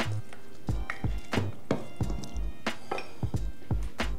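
Wooden spoon knocking and scraping against a stainless steel mixing bowl while a wet marinade is stirred: a string of irregular sharp clicks over soft background music.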